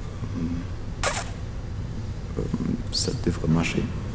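A pause in a recorded voice played back over a room's loudspeakers: a steady low hum, a short hissy noise about a second in, and brief fragments of voice in the second half.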